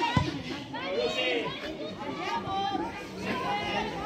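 Several women's voices shouting and calling across a football pitch during play, with one sharp thud near the start.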